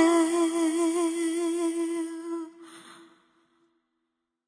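A woman singing one long held note with vibrato, unaccompanied, fading out about three seconds in.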